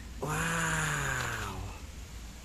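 A man's voice making one long drawn-out vocal sound, about a second and a half long and falling slightly in pitch, over a low steady background rumble.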